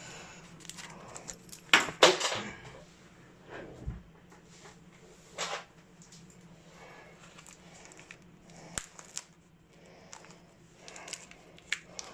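Scattered light clinks, clicks and knocks of small tools and objects being handled and put down, with a few sharper clicks in the first half.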